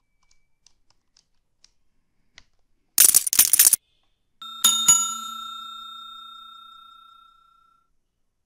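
Subscribe-button animation sound effect: a short rattling burst of clicks about three seconds in, then a bell struck once that rings on and fades away over about three seconds. Faint keyboard taps in the first couple of seconds.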